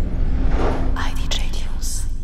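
Record label's logo intro sting: the deep boom of its opening hit slowly fades out under a faint low hum, while several quick swishing effects pass over it.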